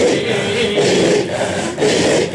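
A group of men's rhythmic, breathy dhikr chanting in a Sufi hadra: forceful voiced exhalations in a pulse of about two a second, with a sustained sung note in the first part.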